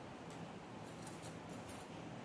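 Faint small metallic clicks and ticks of silver jewellery being handled at the wrist: one early tick, then a quick cluster of several in the second half.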